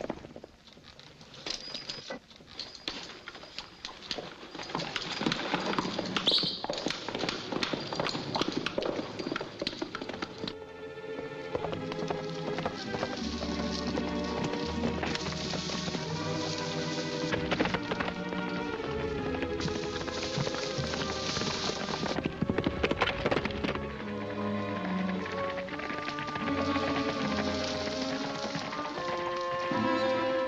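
Horses' hoofbeats, a quick run of knocks for about the first ten seconds. Then the film's background music takes over for the rest.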